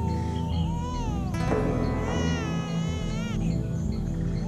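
Background music with high, drawn-out vocal calls that waver and bend in pitch. Each call lasts about a second, the clearest one in the second half. A sharp knock comes about a second and a half in.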